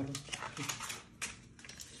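Metal spoons clicking lightly against white plastic food trays, several separate clicks. A short voice-like sound comes at the very start.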